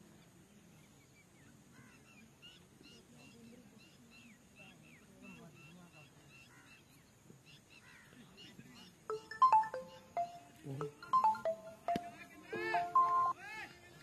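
Mobile phone ringing with an electronic melody ringtone: loud, clean notes stepping between a few pitches, starting about nine seconds in and playing on.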